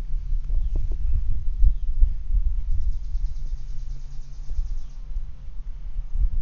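Outdoor ambience: an uneven low rumble on the microphone with a few soft knocks in the first second or so, and a high, rapidly pulsing insect buzz in the middle.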